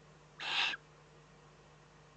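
Eurasian eagle-owl chick giving one short, raspy, hiss-like call about half a second in.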